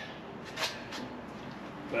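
A short pause between spoken phrases: quiet background with two faint, brief rustles.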